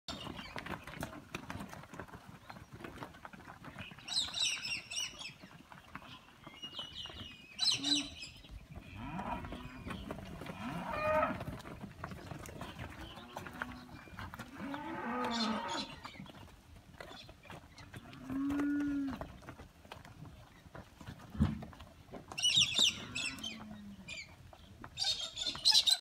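Cattle mooing several times, with one long low moo near the middle. Short bursts of high-pitched calling come in at several points, the loudest near the start and near the end.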